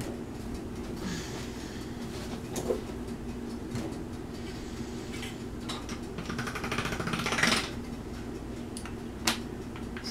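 Pasta machine rolling a sheet of polymer clay through its rollers: a steady mechanical whir and rattle that swells about seven seconds in, with a sharp click near the end.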